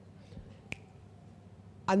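A single sharp finger snap about three-quarters of a second in, over quiet room tone; a woman's voice starts speaking just before the end.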